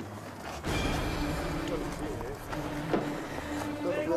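A steady low hum with background noise that grows louder about a second in, and faint, indistinct voices now and then.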